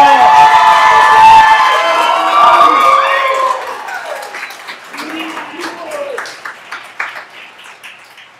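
Audience cheering and applauding, many voices shouting at once over the first three and a half seconds, then thinning into scattered clapping that fades out.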